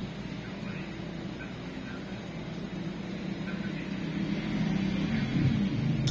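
A low, steady mechanical hum with a few pitched bands, growing louder over the last two seconds.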